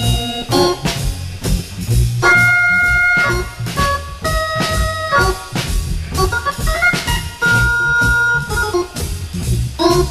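Swing jazz on Hammond organ, with held chords between choppy phrases, over bass and drums keeping a steady beat.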